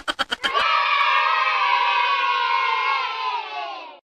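A group of children cheering, coming in about half a second in after a quick run of sharp clicks, then fading out near the end.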